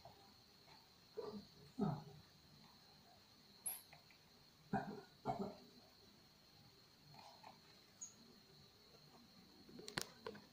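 A few short, faint breathy vocal sounds from an elderly man lying in bed, two of them close together about five seconds in. Under them is a quiet room with a faint, steady, high-pitched whine.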